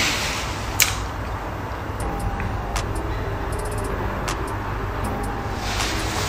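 Steady low rumble of a city bus running, heard from inside the cabin, with a few faint clicks and rattles.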